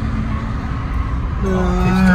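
Car interior road noise while driving: a steady low rumble from the moving car. Music comes back in about one and a half seconds in.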